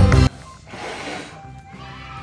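Background music cuts off suddenly just after the start, followed by a short breathy blow as two birthday cake candles are blown out in one breath.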